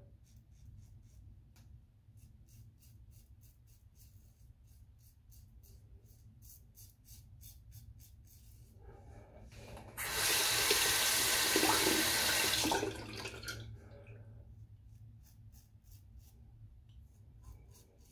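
Merkur 23C safety razor with a Feather blade scraping through lathered stubble in a quick run of short strokes. About ten seconds in, a tap runs into the sink for roughly three seconds, the loudest sound, and then the short razor strokes resume.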